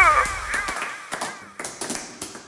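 The music ends with a last gliding vocal note and its bass cuts off under a second in, leaving a run of sharp, irregular taps or clicks, several a second.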